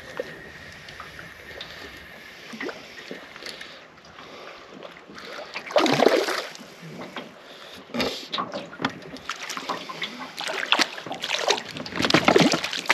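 Water splashing and sloshing at the side of a small aluminium boat as a hooked rainbow trout is played in close, with a louder splash about six seconds in and quick, irregular splashes and clicks building near the end.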